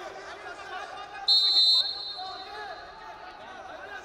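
Referee's whistle: one short, loud, steady high-pitched blast about a second in, restarting the wrestling bout. A babble of arena crowd voices runs under it.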